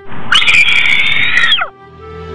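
A loud, shrill scream held for about a second and a half, dropping in pitch as it cuts off.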